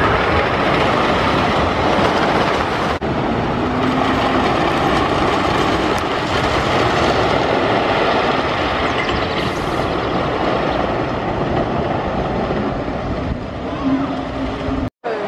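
Train of a Custom Coasters International wooden roller coaster running along its wooden track, a steady rumble.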